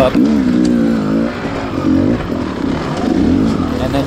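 Dirt bike engine running under the rider's throttle, its note rising and falling several times as it is revved and eased off.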